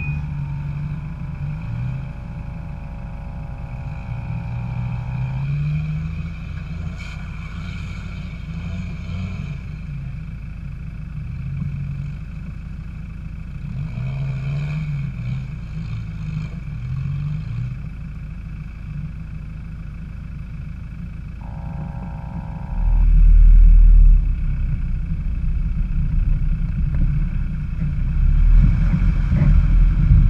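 Land Rover engine running close to the microphone, its pitch wandering up and down as the throttle is worked on a muddy off-road track, with a higher whine coming and going twice. About 23 seconds in it gets clearly louder as the engine is revved harder and stays up.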